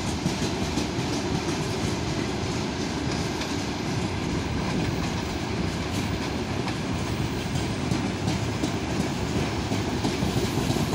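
Freight train wagons rolling along the rails in a steady rumble, with the click of wheels over rail joints.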